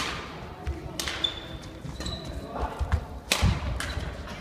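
Badminton rally on a wooden hall floor: several sharp racket strikes on the shuttlecock, the loudest about three and a half seconds in, echoing around the hall. Thuds of feet on the court and short high squeaks of sneakers run between the hits.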